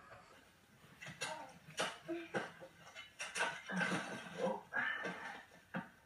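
Faint television audio from a drama episode: scattered soft knocks and clatter, with a low voice speaking briefly near the end.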